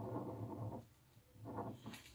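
Faint scratching of a ballpoint pen drawing on paper, with a short pause in the middle.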